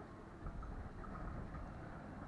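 Wind rumbling on the microphone at a marina, with a few faint short high tones over it.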